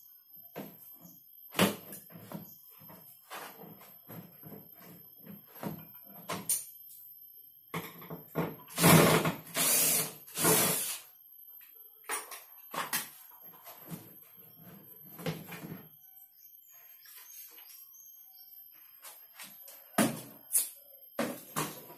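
Cordless drill-driver running in three short bursts, backing out the screws of an LED TV's plastic back cover, amid scattered clicks and knocks from handling the casing and screws.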